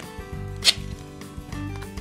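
A single short, sharp rip of duct tape about two-thirds of a second in, over soft background music.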